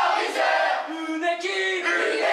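A team of teenage boys chanting a victory chant together, in sung notes that change every few tenths of a second.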